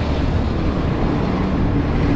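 Intercity bus engine and road noise heard from inside the cabin, a steady low rumble while the bus drives along, with a steady hum joining about a second in.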